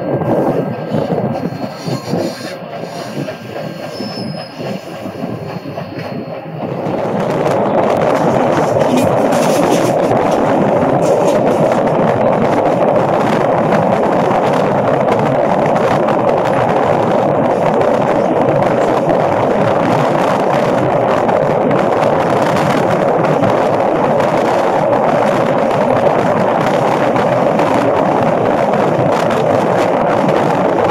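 Passenger cars of a train rolling along the rails at speed, heard from an open window: a steady rush of wheel, rail and wind noise. For the first several seconds it is quieter, with a few faint high-pitched tones, then about seven seconds in it turns louder and stays even.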